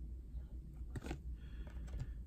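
Trading cards handled in the hands, a couple of faint flicks and slides of card stock as one card is moved off the next, over a low steady hum.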